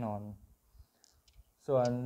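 A man speaking, with a pause about a second in that holds a few faint, light clicks from handling plastic 12-gauge dummy shells in his hands.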